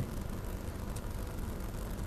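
Steady low hum and hiss of the studio recording's background noise, with no distinct sound.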